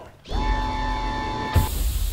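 Sliding-door sound effect on a video's end-screen transition: a steady mechanical hum with a low rumble for about a second, then a sudden heavy slam as the doors shut, about one and a half seconds in, trailing into a hiss.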